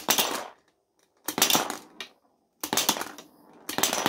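A rapid-fire B-Daman toy shooter firing marbles from its magazine in short bursts, the marbles clacking against the target and clattering across a plastic board. There are several bursts of sharp clicks and clacks, about a second apart.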